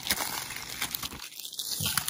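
Plastic crinkling and crackling as a Blu-ray case is handled and worked open, with a brief lull a little past halfway.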